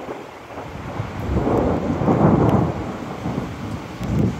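Thunder rumbling in a monsoon storm: the rumble builds about a second in, is loudest around the middle, then fades. Wind buffets the microphone throughout.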